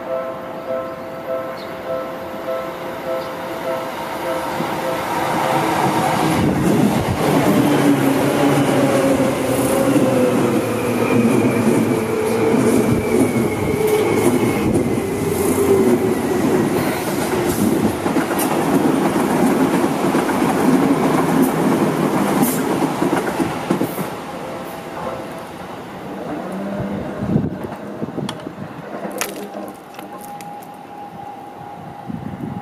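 A level-crossing bell rings in steady pulses as a yellow Seibu Ikebukuro Line commuter train approaches. The train then passes close by for nearly twenty seconds, its running noise carrying a slowly falling whine and scattered knocks from the wheels on the rails. The crossing bell is heard again near the end.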